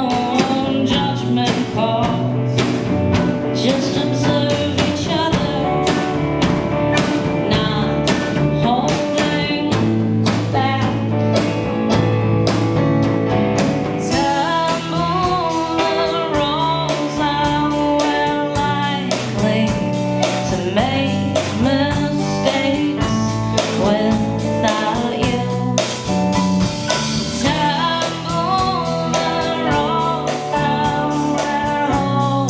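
Live band playing a song: a woman singing over a Yamaha electric keyboard, electric guitar, bass guitar and drum kit, with a steady drum beat. The drums get fuller, with more cymbal, about halfway through.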